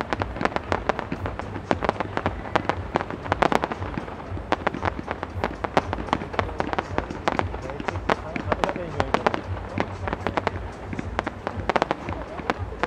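Aerial firework shells bursting in quick, irregular succession: a dense run of sharp bangs, several a second, with no let-up.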